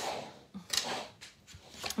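Hands moving craft supplies around on a tabletop: soft rubbing and scraping, with a short louder scrape a little under a second in.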